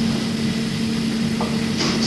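Steady low hum and background hiss of a low-quality 1970s amateur tape recording, heard in a pause between spoken sentences.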